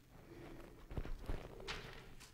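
Faint handling noise: a few soft knocks close together about a second in, then a brief hiss near the end, over a faint steady hum.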